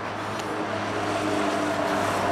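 A motor vehicle's engine running nearby, a steady hum that grows slowly louder.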